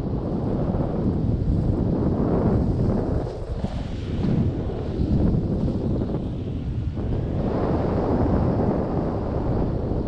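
Airflow buffeting the microphone of a camera held out from a paraglider in flight: a steady, gusting rush of wind noise that eases briefly about three and a half seconds in.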